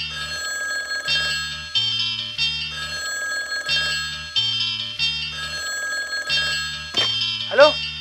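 A mobile phone's electronic ringtone playing a short tune with a bass line, repeating over and over.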